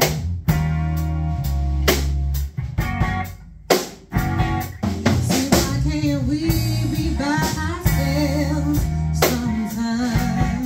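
Live blues band playing: drum kit, bass guitar and electric guitar with a wavering lead melody on top. The band thins out almost to nothing about three seconds in, then comes back in full.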